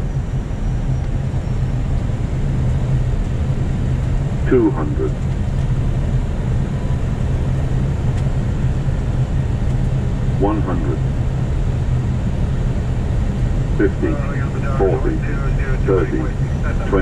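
Steady low drone in an Airbus airliner's cockpit on final approach, the noise of engines and airflow. Short voice callouts come now and then, with a quick run of them near the end as the plane nears touchdown.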